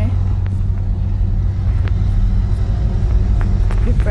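A steady low rumble with a few faint clicks.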